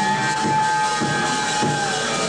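Live rock trio playing: an electric guitar holds one long sustained note that sags slightly in pitch near the end, over bass guitar and drums.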